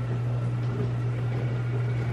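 A steady low hum, unchanging throughout.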